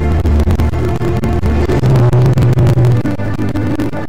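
Instrumental music with long held bass notes and no voice; the bass note shifts about two seconds in.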